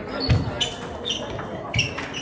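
Table tennis rally: a celluloid ball clicking sharply off bats and table about three times, with two deep thumps, the loudest about a third of a second in and another near the end, from a player's feet landing on the hall floor.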